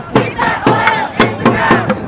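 A crowd of marchers chanting in unison, shouted voices keeping time with a drumbeat of about two hits a second from a marching snare drum and a plastic bucket struck with drumsticks.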